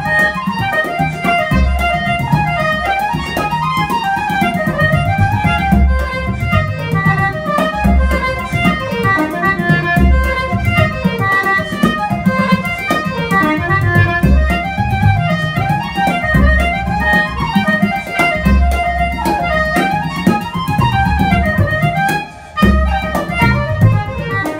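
Flute and concertina playing an Irish reel together, with a bodhrán beating time underneath. The music drops briefly near the end.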